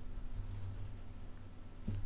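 Computer keyboard typing: a few light keystrokes as a command is typed.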